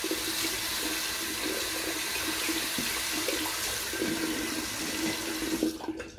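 Bathroom tap running steadily into the sink, with irregular splashing as the face is rinsed with cold water after a shave.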